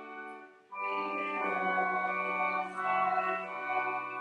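Church organ playing a hymn in sustained chords, with a short break between phrases about half a second in before the next chord sounds.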